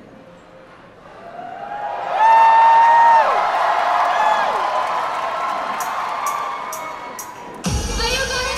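Concert crowd cheering and whooping between songs, rising after a quiet first second, with a loud drawn-out whoop that falls away about two seconds in and another shorter one soon after. Near the end a sudden deep bass hit as the next song's music starts.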